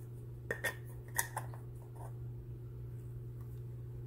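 A few light clicks and taps from small plastic cosmetic packaging being handled, clustered in the first second and a half, over a steady low hum.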